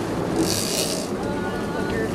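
A sportfishing boat running at trolling speed: a steady wash of engine, water and wind noise, with a short hiss about half a second in.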